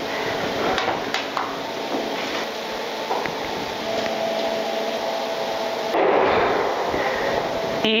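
Metal tubing being handled and set down on a sheet-metal door panel: a few light knocks and clinks over a steady shop background noise, which grows louder near the end.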